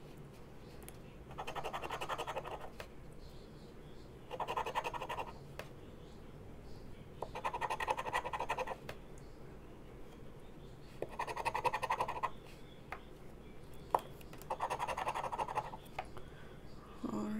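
Scratch-off lottery ticket having its coating scraped off with the edge of a fidget spinner, in five short bursts of scratching about three seconds apart, with a few light clicks in between.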